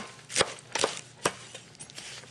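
Chef's knife chopping radish greens on a wooden cutting board: three or four sharp knife strikes about half a second apart, stopping a little over a second in.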